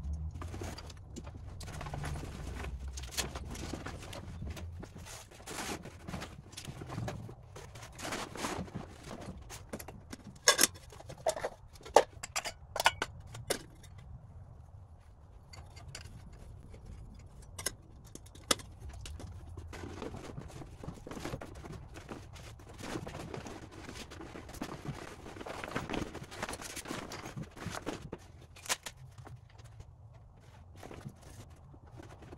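Camping gear being handled and packed: rustling of fabric and stuff sacks, with short clicks and knocks throughout and a cluster of sharp knocks about a third of the way in.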